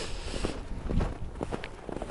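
Footsteps of a person walking: a few uneven steps.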